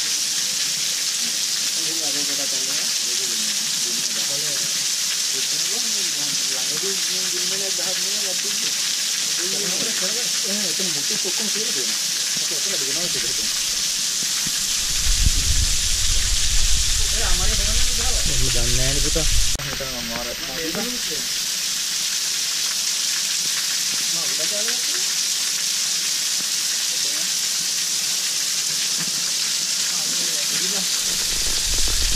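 Steady hiss of a waterfall's water and spray falling onto rock. A low rumble joins it about fifteen seconds in and stops suddenly a few seconds later.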